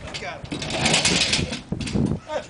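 A loaded plastic bread crate scraping and rustling as it is pulled off the truck bed, a noisy sound of about a second, with voices in the background.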